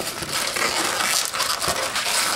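Inflated latex 260 modelling balloons rubbing and squeaking against each other and the hands as they are twisted into pinch twists.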